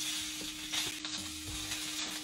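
Steady sizzling hiss of hot oil in a tamagoyaki pan, with a few faint light clicks from the rolled egg being handled on a bamboo rolling mat. A steady low hum runs underneath.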